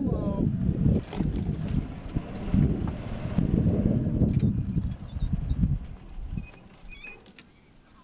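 Golf cart driving along a path, heard as a loud, uneven low rumble that drops away about six and a half seconds in.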